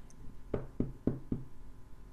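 Four light knocks in quick succession, about four a second, in the middle of a quiet stretch.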